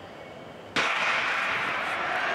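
Starting gun firing once, sharply, to start a 110 m hurdles race, about three quarters of a second in after a hush. A steady rush of stadium crowd noise follows straight after.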